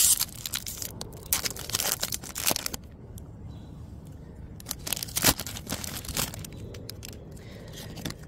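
Foil wrapper of a Topps baseball card pack being torn open and crinkled by hand, in several short spells of crackling with a quieter pause around the middle.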